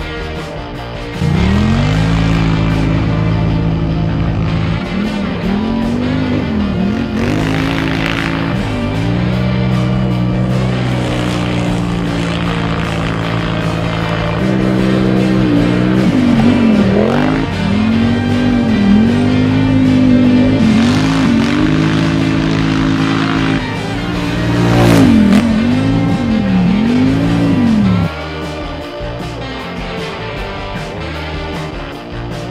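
Polaris Scrambler XP 1000 S quad's twin-cylinder engine at racing speed, starting about a second in. The pitch holds steady for stretches, then dips and climbs again several times as the throttle comes off and back on, and the engine cuts off suddenly near the end. Background music runs underneath.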